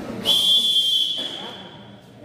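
Referee's whistle blown once: a single steady high tone that starts about a quarter second in, holds for about a second, then fades away.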